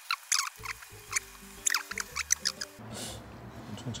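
A cat eating from a plate close to the microphone: a quick, irregular run of small wet clicks from licking and chewing, which stops near three seconds in. Soft background music plays underneath.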